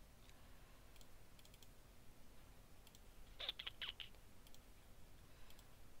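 Faint computer mouse clicks over quiet room tone, with a short, louder cluster of clicks a little past halfway.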